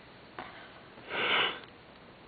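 A person sniffing once: a single short, hissy breath about a second in, close to the microphone.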